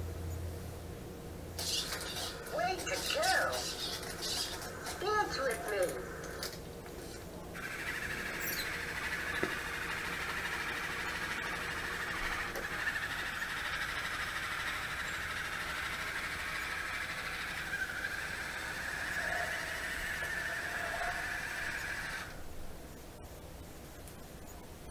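A few seconds of the Meccanoid robot's high, gliding electronic voice sounds, then a steady whirring of its foot drive motors for about fifteen seconds as the robot rolls and turns. The whirring cuts off sharply near the end.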